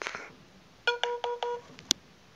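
Four short electronic beeps in quick succession, about five a second, on one steady pitch, followed by a single sharp click.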